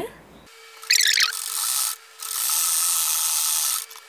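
Usha sewing machine stitching elastic onto a fleece waistband. A short squeaky run comes about a second in, then a steady run of about a second and a half that stops shortly before the end.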